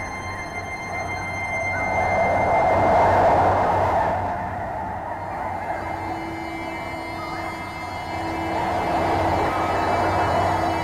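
Experimental electroacoustic drone: a dense band of rushing noise that swells about three seconds in and again near the end, over a low steady hum and faint thin high tones.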